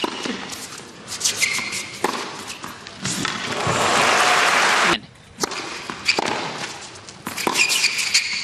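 Tennis crowd applauding after a point, swelling to its loudest and then cut off abruptly about five seconds in. Near the end come a few sharp knocks of a tennis ball being bounced on the court before a serve.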